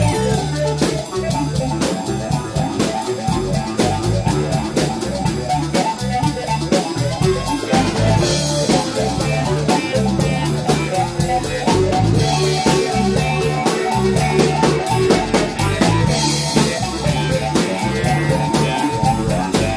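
Live band playing a rock number: electric guitar over a drum kit keeping a steady beat.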